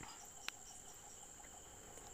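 Faint background noise with a steady high-pitched whine and one small click about half a second in.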